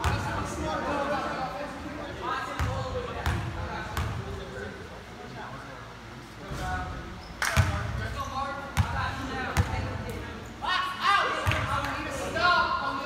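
A basketball bouncing on a gym floor: three dribbles about two-thirds of a second apart a few seconds in, then more thuds of the ball hitting the floor in the second half. Voices chatter in the background, and the hall echoes.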